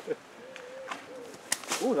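A sabre blade striking a thrown target mid-air: one sharp crack about one and a half seconds in, with a voice exclaiming 'ooh' right after.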